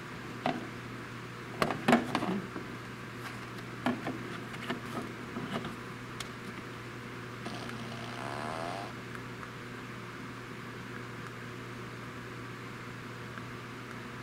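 Plastic clicks and knocks from handling a remote-controlled fart machine and pressing its remote. About seven and a half seconds in, the machine's speaker gives a faint, wavering sound lasting about a second and a half that stops abruptly, weak because its 9-volt battery is dead.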